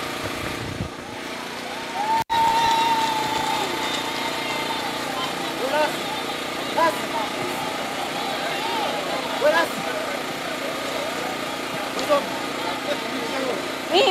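Murmur of a seated crowd, scattered distant voices, over a steady hum.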